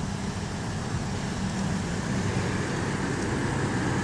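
Steady outdoor background noise of road traffic, with a faint low hum underneath.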